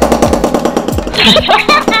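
Rapid knife chopping on a cutting board, about ten quick strokes a second, over background music; laughter comes in about halfway through.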